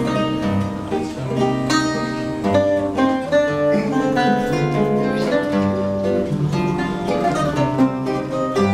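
A guitarra portuguesa and a viola de fado (classical guitar) playing fado together: a plucked, ringing melody over plucked guitar chords, with no voice.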